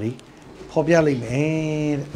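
A man's preaching voice: a short pause, then one long drawn-out syllable held at a steady pitch.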